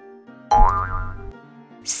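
Light children's background music, with a cartoon "boing" sound effect about half a second in, its pitch rising over a short low thud. A voice begins to say "six" near the end.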